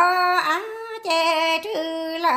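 A woman singing kwv txhiaj, Hmong sung poetry, unaccompanied. She holds long notes that step up and down between a few pitches with a slight waver.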